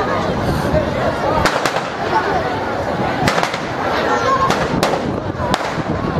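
Firecrackers going off in a burning New Year's effigy: about seven sharp cracks at irregular intervals, some in quick pairs, over the crackle of the fire and the chatter of voices.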